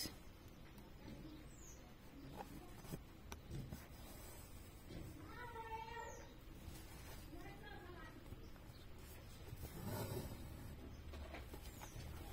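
Faint meows of a cat: one drawn-out call about five seconds in and a weaker one near eight seconds, over a quiet background with a few soft clicks.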